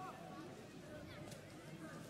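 Faint pitch-side ambience at a football match: distant shouts and calls from players on the field over a low, steady background hum.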